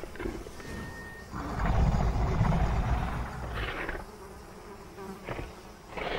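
Flies buzzing, and a deep, rumbling dinosaur growl made for a Tyrannosaurus rex. The growl starts about a second and a half in and lasts about two seconds; it is the loudest sound here.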